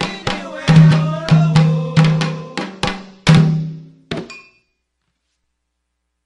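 Candomblé ritual music: hand-played atabaque drums striking about two to three times a second under chanted singing, the song ending with a last stroke about four seconds in, then silence.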